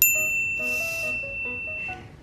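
A single bright bell ding, struck once at the cut and ringing on for nearly two seconds, over soft background music.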